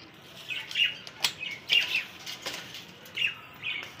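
Caged birds chirping in short, repeated calls, with wing flutters and a few sharp clicks, the loudest about a second in.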